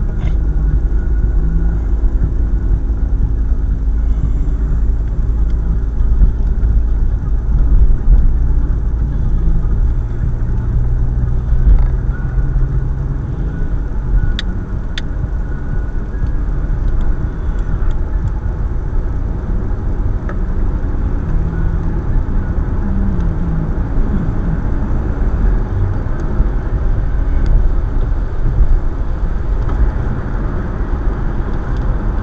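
A car driving, heard from inside the cabin: a steady low rumble of road and engine noise, with the engine's hum shifting in pitch now and then. Two sharp clicks come about halfway through.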